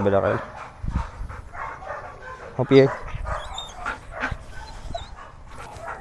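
A Belgian Malinois barks once, short and loud, about two and a half seconds in, amid fainter outdoor sound.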